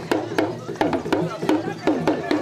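Hand drum played in a quick, even rhythm for a dance: sharp strokes about three or four a second, each tone dropping in pitch as it dies away.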